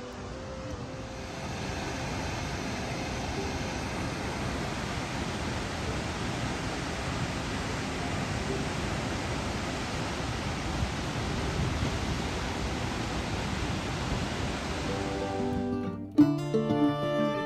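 Waterfall pouring into its plunge pool: a steady rushing noise, with faint music underneath. It cuts off suddenly just before the end.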